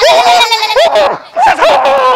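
Dog whining and yelping: a quick string of high, rising-and-falling whines, several in a row.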